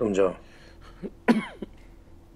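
An elderly man coughing and clearing his throat: a short burst of voice at the start, then a couple of short coughs about a second in.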